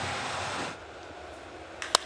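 Steady stadium ambience hiss that drops lower about two-thirds of a second in, then near the end a single sharp crack of a wooden baseball bat meeting a pitched ball on a home-run swing.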